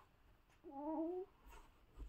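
A baby gives one short fussy cry, about half a second long, rising a little in pitch at the end. It is followed by a couple of faint soft bumps.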